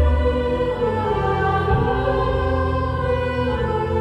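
Slow live band music with long held chords and choir-like singing.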